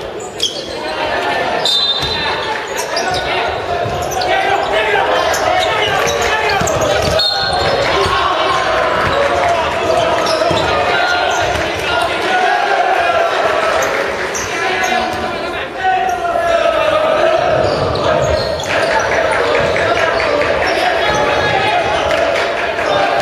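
A basketball bouncing on a wooden gym floor, with voices of players and onlookers calling throughout, in a large echoing hall.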